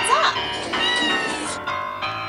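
A domestic cat meows once, a short rising call right at the start, over background music with a singing voice.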